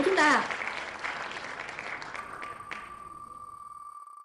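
Wheel of Names winner sound effect: recorded crowd applause and cheering that fades away over the first two seconds. About two seconds in, a fast, even electronic ticking of the wheel being spun starts.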